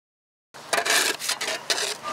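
A shovel scraping and scooping pothole patching mix: about four rasping strokes, starting about half a second in.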